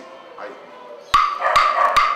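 A pair of wooden claves struck together: two sharp clicks, each ringing with a clear high tone, in the second half.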